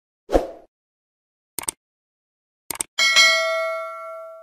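Subscribe-button animation sound effects: a short pop, then quick clicks about one and a half seconds in and again a second later. A notification bell ding follows about three seconds in and rings on, fading slowly.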